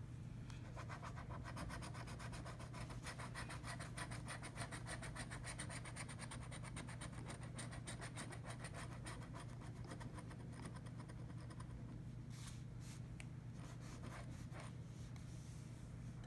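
A coin scratching the coating off a paper scratch-off lottery ticket in rapid, even strokes, which stop about 12 seconds in, followed by a few single scrapes.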